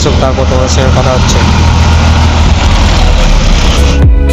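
Bus engine idling with a steady low rumble, with a person's voice over it in the first second or so.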